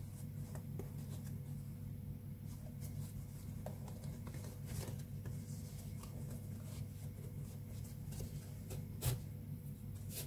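Soft rustling and small clicks of hands handling a T-shirt-yarn basket as a plastic yarn needle is pushed through the stitches, with a slightly louder click about nine seconds in. A steady low hum runs underneath.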